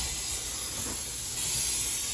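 Aerosol cooking spray (Pam) hissing steadily out of its can into a frying pan, from a can that is running low.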